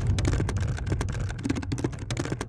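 Rapid, irregular keyboard-typing clicks, a typewriter-style sound effect that goes with text being typed onto the screen, over a steady low drone.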